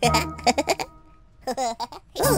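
A cartoon lamb character's wordless, bleat-like voice in two short bursts, the second about a second and a half in with a wavering pitch, over soft background music.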